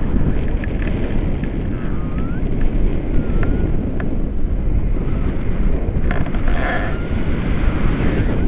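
Airflow of a paraglider in flight buffeting an action camera's microphone on a selfie stick: a loud, steady rush of wind noise, heaviest in the low end.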